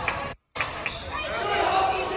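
Basketball game sounds echoing in a gym: a ball bouncing on the hardwood court while players and spectators call out. The sound cuts out completely for a moment just under half a second in.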